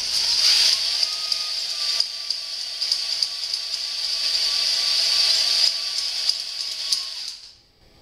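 Hand drill spinning a stone cylinder hone in an oiled bore of a Suzuki GS550 cylinder block: a steady motor whine that rises as it spins up, over the hiss of the stones scraping the cylinder wall as they break the glaze and cut a crosshatch. It stops about seven and a half seconds in.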